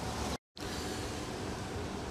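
Steady rushing wind and rolling noise on the camera microphone of a rider moving on an electric unicycle, broken by a brief cut to silence about half a second in.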